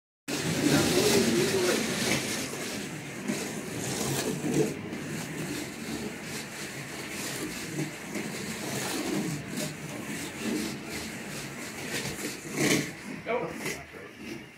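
Several 1:32-scale Slot.it slot cars racing laps on a routed track with copper rails: a continuous rasping, whirring noise of their small electric motors, gears and tyres, with voices over it.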